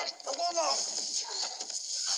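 Brief shouted voices and cries during a scrimmage, one short gliding call standing out early, over a steady high hiss.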